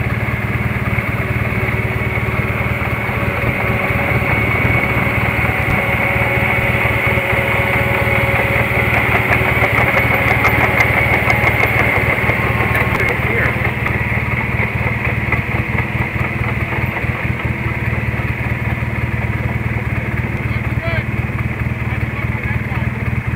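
Engines running steadily: the side-by-side carrying the camera close by and a Caterpillar D5K crawler dozer pulling a Class A motorhome through sand.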